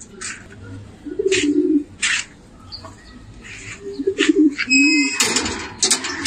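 Domestic pigeons cooing: several low coos, one at about a second in and a few more around four to five seconds in, among short sharp high sounds. A louder noisy burst comes near the end.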